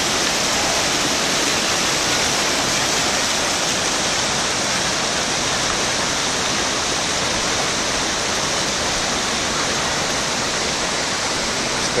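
Waterfall cascades pouring into a rock pool, a steady, unbroken rush of water.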